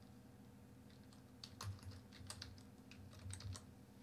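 Faint typing on a computer keyboard: a quick run of key taps starting about a second and a half in.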